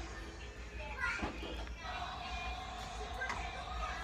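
Faint children's voices in the background over music playing, with a held tone through the second half.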